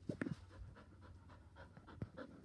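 Border Collie panting quickly, about six breaths a second, with a few louder low bumps in the first moment.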